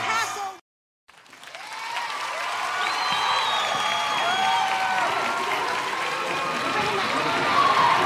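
A vocal track cuts off about half a second in; after a brief silence, audience applause and crowd voices fade in, as at the start of a live concert recording.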